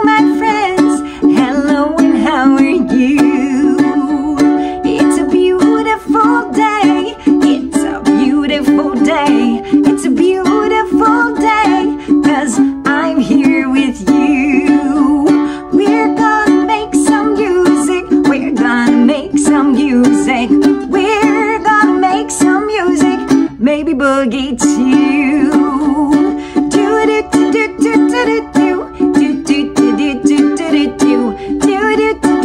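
Ukulele strummed in a quick, steady rhythm, with a woman's voice singing along.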